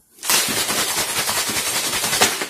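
Plastic litre bottle of water shaken hard, the water sloshing in a rapid, even rattle that starts a moment in. The shaking mixes dissolving potassium and baking soda powder into the water.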